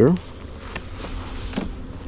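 Honeybees buzzing around an open hive, with a few faint clicks as a metal hive tool pries at the queen excluder.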